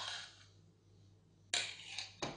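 Metal utensils scraping and clattering against a stainless steel pot and bowl: one short burst at the start, and another about one and a half seconds in.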